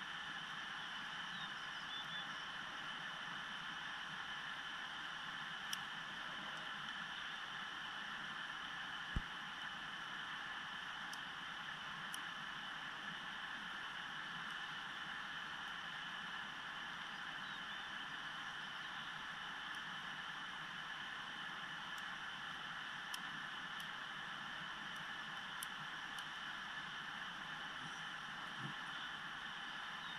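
Steady outdoor rushing noise, with a few faint, sharp clicks from a pick and tension wrench working the pins of a Yale Series Y90S/45 padlock; the sharpest click is about nine seconds in.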